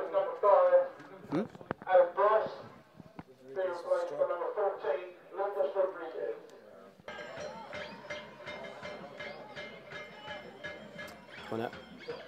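Men's voices calling out on a football pitch. About seven seconds in, music with a steady beat cuts in.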